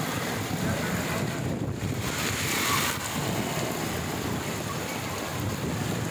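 Steady wash of heavy rain and floodwater running over a street, with wind buffeting the microphone.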